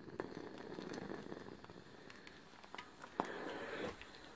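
Sunbeam steam iron gliding over cotton patchwork squares on an ironing mat: a faint rubbing swish, with a few light clicks. The swish is louder in the first second or so and again near the end.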